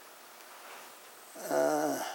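A man's short wordless vocal sound, a low drawn-out groan lasting about half a second near the end, wavering slightly in pitch.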